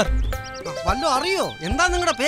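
A voice whose pitch swoops up and down over and over, heard over film background music with steady held notes.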